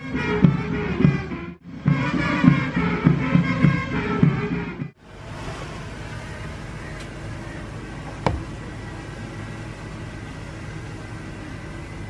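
Band music with a regular beat, cut off twice by edits. After that comes a quieter steady outdoor background with a single sharp knock about eight seconds in.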